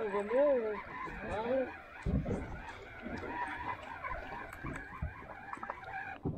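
Conventional fishing reel being cranked to bring in line, with wind and handling noise, a dull knock about two seconds in and faint scattered ticks. In the first second and a half come a few drawn-out calls that rise and fall in pitch.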